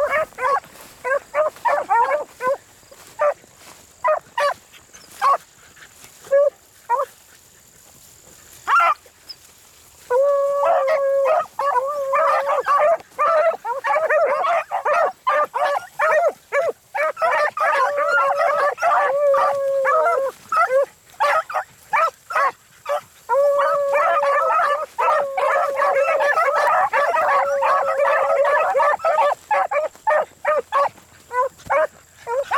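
Pack of beagles baying as they run a rabbit's track. At first there are scattered single calls with gaps, then from about ten seconds in the pack gives voice almost without a break, with a short lull past the middle.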